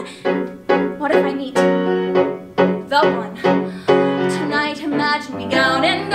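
Piano accompaniment for a musical theatre song, chords struck under a second apart, with a woman's singing voice joining over it near the end.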